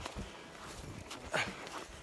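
Faint footsteps crunching in snow, with a brief breath or grunt from the walker about one and a half seconds in.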